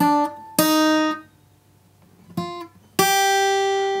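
Takamine cutaway acoustic guitar playing single picked notes from a C minor scale, each a little higher than the one before. Two notes are played, then there is a pause of about a second, then two more, and the last one is left ringing.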